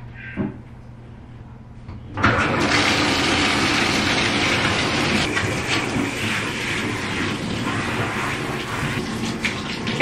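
Handheld shower sprayer turned on about two seconds in, then water running steadily onto a dog's coat and into a bathtub.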